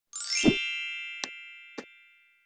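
Logo intro sound effect: a bright, shimmering chime sweeps up with a low thump, then rings and slowly fades, with two short clicks during the fade.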